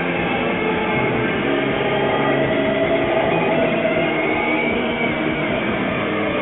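Live rock band playing a loud, dense wall of distorted electric guitars holding sustained droning notes, over a steady low pulse.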